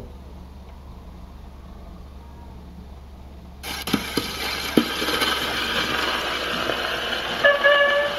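The needle of a Columbia Vivatonal Grafonola's soundbox is set down on a spinning 78 rpm shellac record. About three and a half seconds in, loud surface hiss starts suddenly from the run-in groove, with a few crackles. The dance band's first notes come in near the end, played through the acoustic horn.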